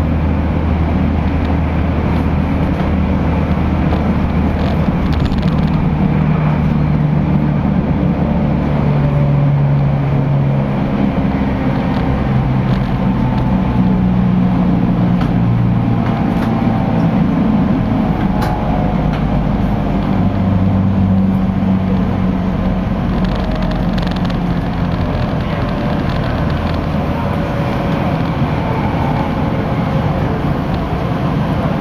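Local train running, heard from inside the passenger car: a steady low rumble of wheels on rail under a hum whose pitch shifts in steps as the train's speed changes.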